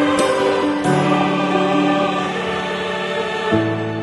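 Background music of held, choir-like chords, changing about a second in and again near the end.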